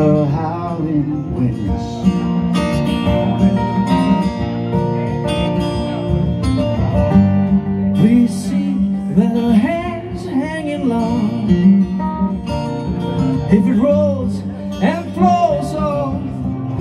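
Two acoustic guitars played together in a slow, steady folk accompaniment, with a man singing over them live.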